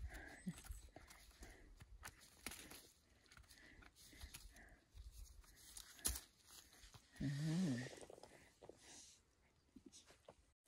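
Faint scraping and clicking of a small knife trimming the stem base of a sheep polypore mushroom, with light handling and leaf-litter sounds. About seven seconds in there is a short hummed voice sound.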